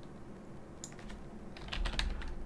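Typing on a computer keyboard: a few quiet key clicks about a second in, then a quicker run of keystrokes near the end.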